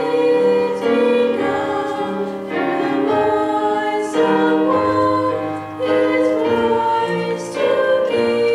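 Three female voices singing a slow song in harmony through microphones, holding long notes, over a low instrumental accompaniment.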